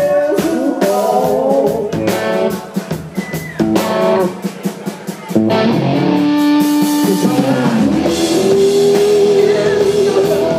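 Live rock band: electric guitar, drum kit and sung vocals. The first few seconds are choppy and stop-start; about five seconds in, the full band comes in louder with long held notes, one bending down in pitch.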